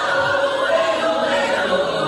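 Gospel choir singing long held chords, several voices sustaining steady notes with no bass or drums underneath.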